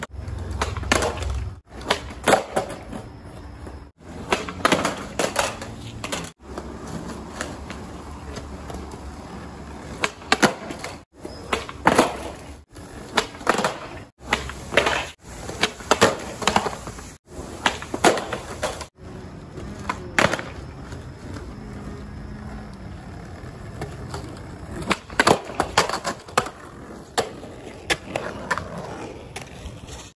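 Skateboard wheels rolling on concrete, with repeated sharp clacks of the board popping and landing on trick attempts. The sound is broken by several abrupt cuts.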